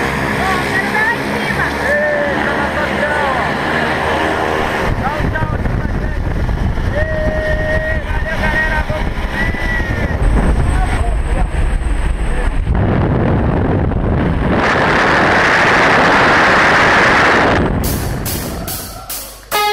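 Indistinct voices over steady background noise, then the din inside a light jump plane. For the last three seconds or so there is a loud, even rush of wind on the camera microphone as the tandem skydivers leave the aircraft.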